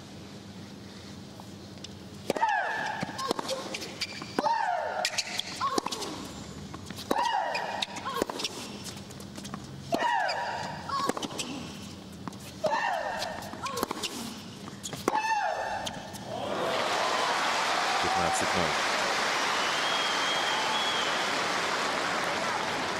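Tennis rally: a female player's loud shriek, falling in pitch, on each of about six of her strokes every two to three seconds, with the sharp pops of racket on ball. About three-quarters of the way through, the point ends and a stadium crowd breaks into steady applause.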